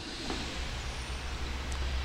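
A steady low engine rumble in the background, with a faint even hiss above it.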